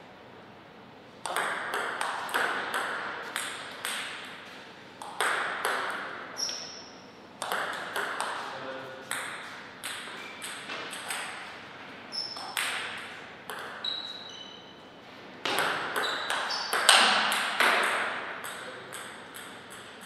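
Table tennis ball being hit back and forth, ticking off the rackets and the table in fast exchanges. The play comes in three runs of quick strikes with short pauses between them, and a few short high squeaks.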